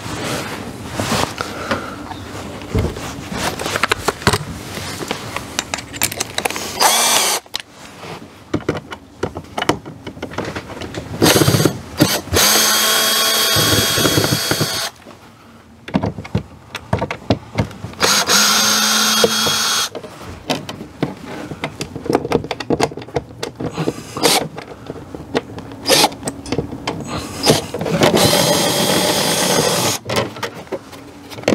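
Cordless 18-volt drill running in several separate spells of one to three seconds, a steady motor whine, as it backs out the screws holding the cover of an RV power center. Clicks and knocks of tools and the metal cover being handled come in between.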